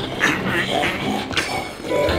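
A man growling and snarling like a zombie.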